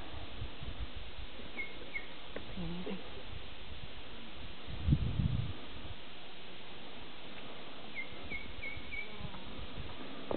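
Steady open-air hiss with a few short high chirps from a small bird: two about two seconds in and a quick run of four near the end. About halfway through there is a brief low rumble, the loudest moment.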